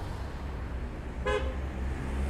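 A car horn gives one short beep a little over a second in, over a steady low outdoor rumble.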